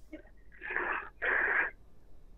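Two breathy exhales of about half a second each, one after the other, heard through a telephone line with the thin, narrow sound of a phone call.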